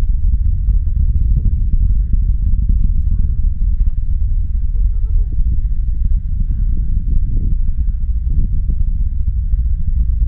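Deep, continuous rumble of a Falcon 9 rocket's nine first-stage engines during ascent, heard from miles away and arriving well after the liftoff; it holds steady without breaks.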